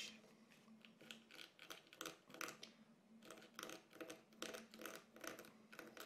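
Craft knife blade scratching across dry watercolour paper in short, faint strokes, a few a second, lifting white sparkle lines out of the painted water.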